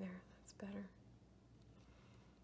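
A woman's voice, quiet and brief: two short syllables under her breath in the first second, then near silence.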